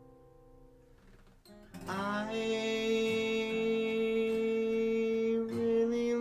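An acoustic guitar chord dies away, then about two seconds in the guitar is strummed again under a long held vocal note.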